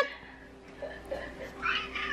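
Domestic cat meowing: one meow ends right at the start, followed by quieter sounds until the next call.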